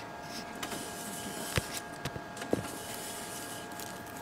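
Microfilm reader's motorized film transport running fast, a steady mechanical whine of several fixed tones as the film winds between the spools. Two sharp clicks come about a second and a half and two and a half seconds in.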